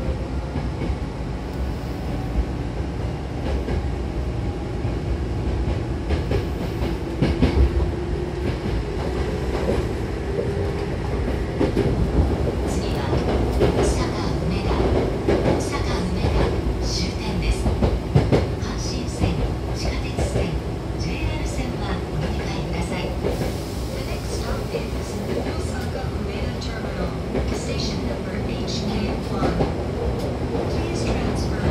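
Hankyu Kobe Line electric commuter train heard from inside the car while running: a steady rumble of wheels on the rails, with a faint motor hum in the first third and a run of short high squeals and clicks around the middle.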